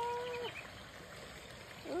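A woman's drawn-out, high-pitched vowel, held steady and then falling off about half a second in, followed by faint steady background hiss.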